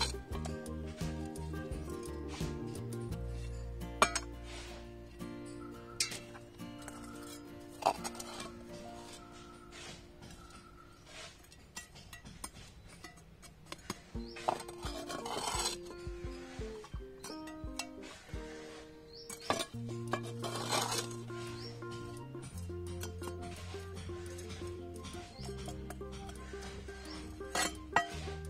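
Background music with steady notes. Over it, a metal garden trowel clinks sharply a few times and scrapes through potting soil in a terracotta pot, with two longer scrapes around the middle.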